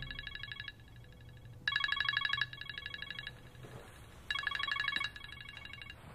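iPhone ringing with an incoming FaceTime call: a trilling electronic ring tone in pairs of short bursts, a louder burst followed by a softer one, repeating about every two and a half seconds. The ringing stops shortly before the end as the call is answered.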